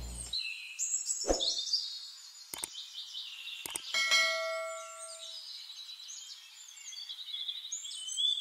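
Birdsong ambience of chirps and trills, with three sharp clicks in the first half. About four seconds in comes a ringing ding that fades over about a second, like a subscribe-button sound effect.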